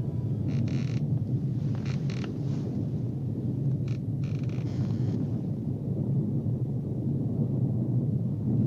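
A low, steady rumbling drone, with short hissing swells about half a second, two seconds, and four to five seconds in.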